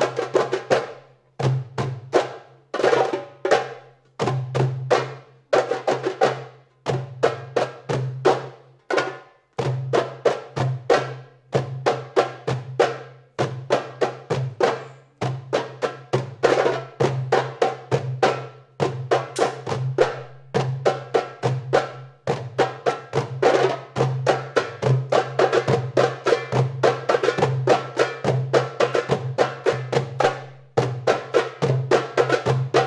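An ensemble of darbukas (Arabic goblet drums) played by hand: sharp high slaps and rim strokes over deep ringing bass strokes, in a complex, many-layered rhythm. The playing has short breaks early on and becomes near-continuous in the second half.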